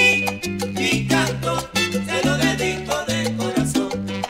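Salsa music in an instrumental stretch with no singing: a bass line stepping between held notes under percussion and pitched instruments.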